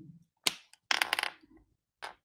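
A whiteboard marker being picked up and handled: one sharp click about half a second in, then a quick run of small clicks about a second in.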